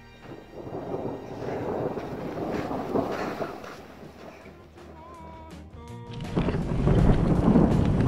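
Rolling thunder that swells over about three seconds and then fades, with quiet music under it. About six seconds in, loud wind starts buffeting the microphone.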